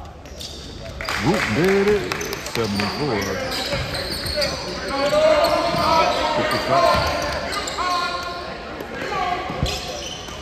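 Basketball game sounds echoing in a large gym: players and spectators shouting, sneakers squeaking on the hardwood and a basketball bouncing. The shouting starts about a second in.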